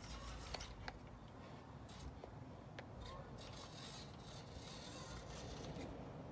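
Faint whirring and scraping of a mini RC rock crawler's small electric motor and gears as it creeps over tree roots, with a few light clicks in the first three seconds and the busiest stretch in the second half.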